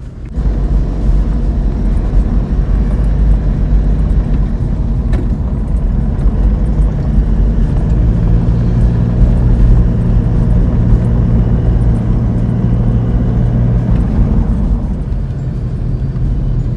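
Low, steady road and engine rumble heard from inside a moving car, with a steadier engine hum from about seven seconds in that fades near the end.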